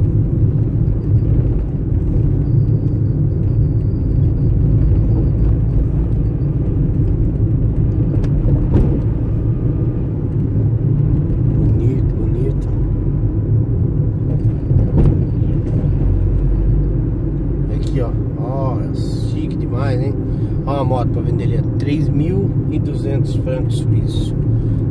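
Steady engine and tyre rumble heard inside the cabin of a vehicle driving slowly along a paved road.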